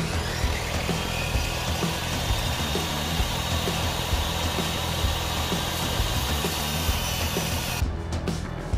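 Portable jobsite table saw ripping a wooden board lengthwise: a steady whine and cutting noise that stops suddenly near the end.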